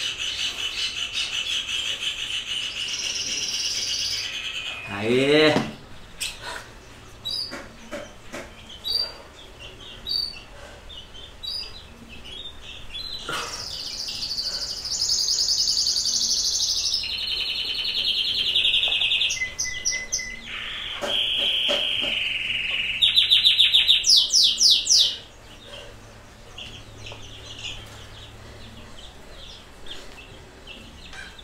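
A songbird singing in long, varied high-pitched phrases, with scattered short chirps in between and a loud fast trill near the end. A brief rising sound comes about five seconds in.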